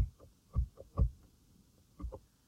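Three soft, low thumps about half a second apart, with a few fainter ones between. They sound like computer mouse clicks or desk knocks picked up through a desk microphone while slides are advanced.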